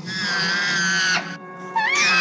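Killer whale's high squealing cry, held for about a second, ending with a drop in pitch, then a rising call near the end. It is the distress cry of a harpooned, bleeding female orca hanging from a boat's hoist.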